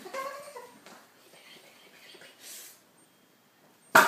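Quiet room sound with a faint whine at the start and a soft swish midway, then one sharp, loud whack near the end, a blow struck while the lizard is cornered at the couch.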